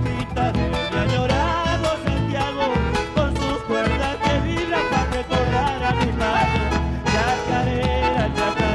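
An instrumental passage of a chacarera, an Argentine folk dance, played on acoustic guitar and bandoneon over a steady, driving beat.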